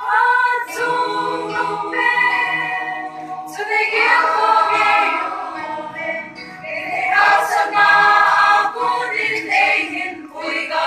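A mixed church choir of young women and men singing, mostly women's voices, in long held phrases, with short breaks for breath about three and six seconds in.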